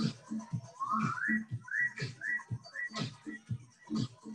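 Background workout music with a steady beat of about two beats a second and a high, whistle-like melody of short rising notes.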